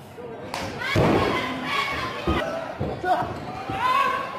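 Wrestlers slamming onto a wrestling ring's canvas: several hard thuds, the loudest about a second in, with shouting voices around them.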